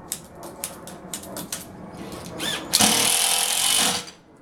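A few light knocks, then a handheld cordless power tool winds up briefly and runs loudly for just over a second near the end, cutting off sharply.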